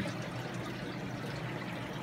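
Aquarium filtration water running and trickling steadily, with fine air bubbles streaming through the tank.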